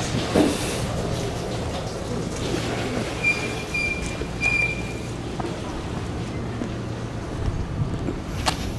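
A steady low mechanical hum, like a vehicle or machine running nearby, that fades out near the end. Three short high beeps of the same pitch sound in the middle.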